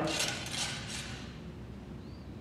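A steel ramrod scraping and clinking briefly in the barrel of a muzzle-loading rifle-musket as the Minié ball is rammed down, then only faint room tone.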